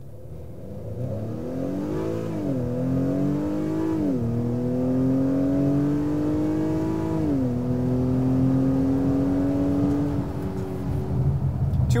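2021 Acura TLX A-Spec's 2.0-litre turbocharged inline-four accelerating hard from a standstill, heard from inside the cabin. The engine note climbs in pitch and drops three times as the 10-speed automatic upshifts, about two and a half, four and seven and a half seconds in, and each climb after a shift is slower. The note fades near the end as the throttle eases.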